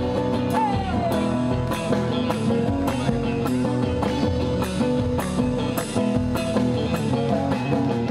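Live band playing an instrumental passage of a chacarera: acoustic guitar and electric guitar over a drum kit, with a steady beat of drum and cymbal strikes a little more than once a second.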